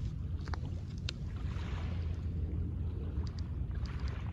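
Small waves lapping onto a pebble beach, their wash swelling about a second and a half in and again near the end, with a few faint clicks. Wind rumbles on the microphone throughout.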